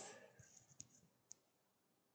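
Near silence with two faint, sharp clicks about half a second apart.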